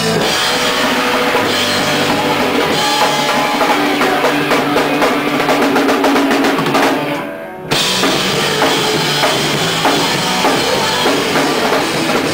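Live rock band playing loudly, with the drum kit prominent. About seven seconds in the sound dips briefly, then the full band comes back in suddenly.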